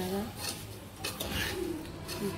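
Metal spoon stirring dry roasted semolina mixture in an aluminium pressure cooker pot, with scattered scrapes and light clinks against the metal. A short low coo-like call sounds right at the start.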